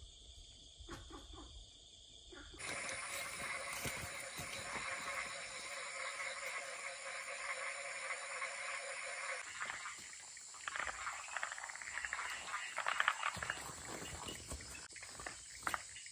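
Night chorus of insects and frogs. A steady high insect trill gives way, about three seconds in, to a louder, dense chorus of calling frogs and insects. In the last several seconds the chorus thins and irregular clicks and rustles come through.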